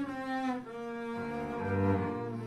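A cello and a double bass bowing a duet together: held notes, with a change of note every half second or so.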